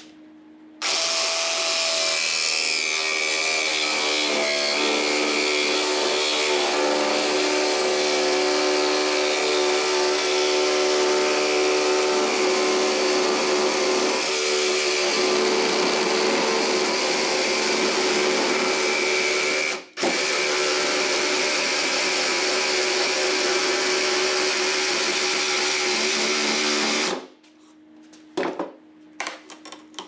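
DeWalt XR cordless jigsaw running steadily as its blade cuts a curve through a 2x6 board, with a split-second break about twenty seconds in. The saw stops a few seconds before the end, followed by a few light knocks.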